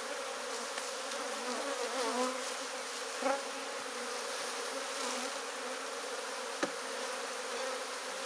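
A mass of honeybees flying around an opened hive, a steady even buzzing hum. One short knock sounds about two-thirds of the way through.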